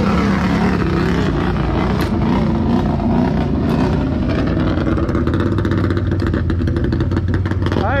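Side-by-side UTV engines idling steadily while the machines wait, stationary, to race: the CFMOTO ZForce 950 Sport with another side-by-side running alongside. A voice calls out right at the end.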